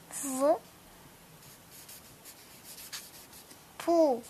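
Faint, dry scratching and rubbing of a fingertip sliding across a paper book page, in scattered small strokes. A brief spoken syllable opens it and a voice comes back near the end.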